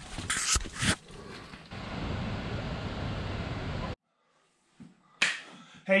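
Rustling and sharp knocks of a handheld camera being moved, then a steady hiss that cuts off suddenly, followed by a single knock.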